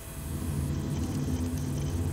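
A steady low mechanical hum that swells about half a second in and holds.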